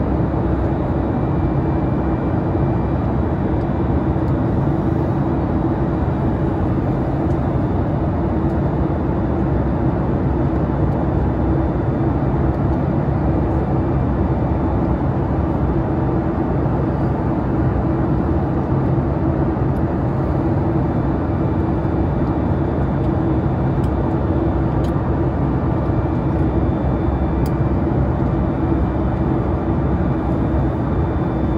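Steady cabin noise of a Boeing 737 MAX 8 in flight: the rush of air over the fuselage and the drone of its CFM LEAP-1B turbofans, with a steady low hum running under it.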